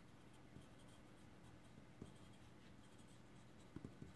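Very faint sound of a pencil writing on paper, with a light tick about two seconds in and a couple more near the end.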